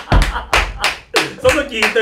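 Hearty laughter punctuated by sharp hand claps, about three a second.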